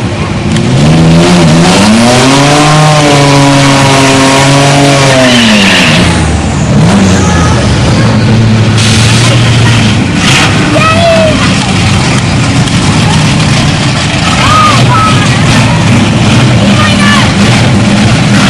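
A drag-racing car's engine pulls hard off the line, its pitch climbing and then holding before it falls away about six seconds in. After that an engine runs loudly and steadily at lower revs.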